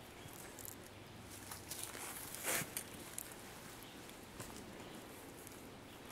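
A PSE Tac-15 compound crossbow fired once about two and a half seconds in: a single short snap of the string release, with a few faint ticks around it.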